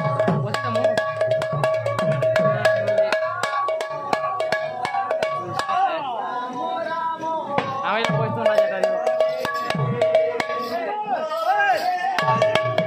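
Kirtan music: a two-headed barrel drum played by hand in a quick rhythm, its bass strokes sliding down in pitch, over a steady held melody note and fast sharp ticks. A voice comes in briefly around the middle.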